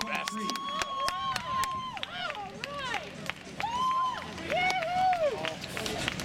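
Spectators shouting and cheering without clear words, with scattered hand claps.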